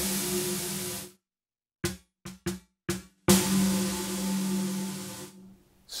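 ATV aFrame electronic frame drum played through a processing effect: a struck hit sends out a long hissing wash with a steady low ringing tone, which cuts off suddenly about a second in as pressure on the playing surface stops the effect. A few short, dry taps follow, then another hit blooms into the same long ringing wash and fades away near the end.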